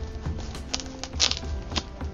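A bushcraft knife blade cutting through packing tape and cardboard on a shipping box, in several short scraping strokes about half a second apart.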